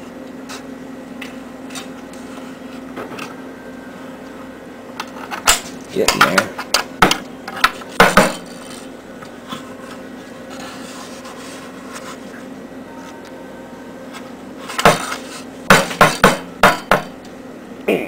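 Steel wrench clinking and knocking on the nuts of a homemade threaded-rod press as they are turned down to force two tin cans together, in short spells of clinks about a third of the way in and again near the end, over a steady low hum.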